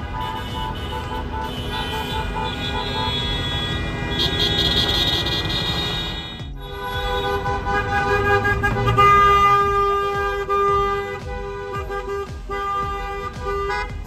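Many car horns honking at once in celebration from a slow-moving line of cars. Short beeps repeat about three a second in the first few seconds, then long held honks overlap, loudest about nine seconds in.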